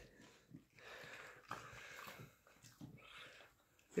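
Faint sniffing and snuffling from a corgi with its nose down on its blanket after a treat, a few short soft bouts.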